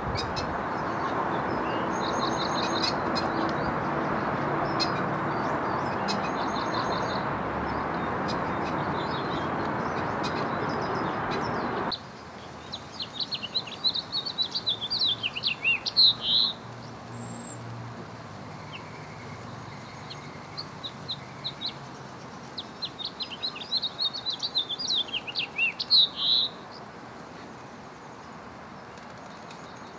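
A small songbird chirping over a steady background rush with a low hum. The rush cuts off abruptly about twelve seconds in. After that the bird sings two long phrases of quick high notes, each ending in a louder burst.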